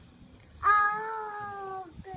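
A toddler's drawn-out vocal "aaah": one held note that starts suddenly about half a second in, sags slightly in pitch and stops after just over a second.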